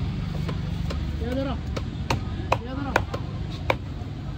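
A large knife chopping fish on a wooden log chopping block: a run of sharp, irregular chops, about two a second, over a steady low rumble.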